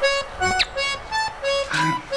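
Background music: a free-reed instrument, in the manner of a vallenato accordion, playing a melody in short, separate notes with brief gaps between them.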